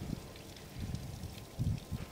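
Wind buffeting an outdoor microphone in low, uneven rumbles, with faint scattered ticks above.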